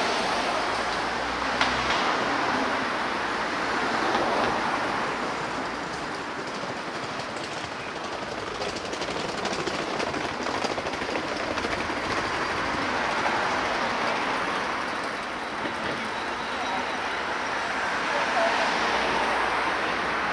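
City street traffic: cars and scooters passing on the road alongside, the noise swelling several times as vehicles go by over a steady background hum.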